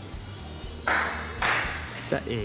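Two sharp, loud strikes about half a second apart, the first about a second in, each trailing off in a short ring.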